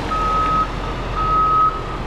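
An electronic warning beeper sounding a single-pitch beep about once a second, each beep about half a second long, over a steady low background rumble.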